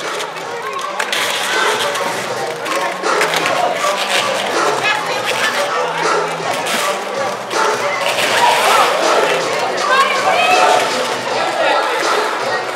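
Indistinct voices of roller derby skaters, referees and onlookers calling out during a jam, with faint music underneath.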